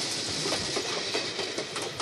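Sóller railway train running on its rails: a steady rolling noise with faint clicks from the wheels.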